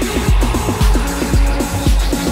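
Electro house track: a steady kick drum about twice a second under a staccato, repeating synth bass riff and hi-hats.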